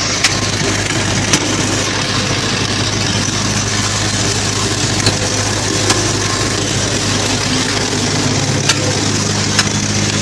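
Motor-driven concrete pan mixer running steadily, a low hum under the paddles churning the red coloured top-layer mix for concrete tiles, with a few sharp clicks along the way.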